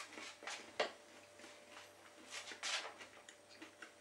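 A man chewing a mouthful of food, with a few faint clicks and smacks.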